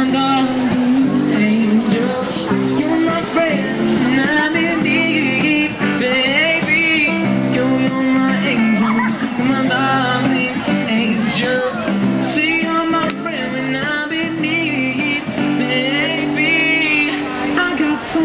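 Acoustic guitar strummed with a man singing into a microphone, his voice holding wavering, drawn-out notes.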